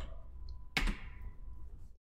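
A single sharp click from the computer's keyboard or mouse about three quarters of a second in, confirming the new-folder dialog, over a quiet room background.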